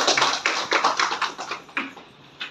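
A small group applauding in a small room, the claps fading out near the end.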